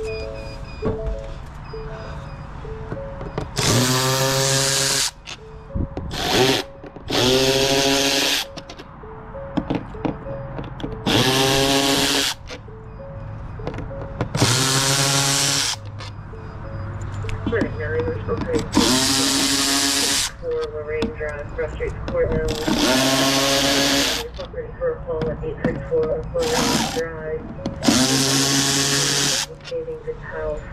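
Milwaukee FUEL cordless ratchet running in about nine short bursts of one to two seconds, each spinning up with a rising whine, as it backs out the screws holding a warning-light fixture.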